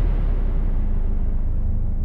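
Low, steady cinematic rumble from a dramatic music sting, with a faint steady hum and no high sound.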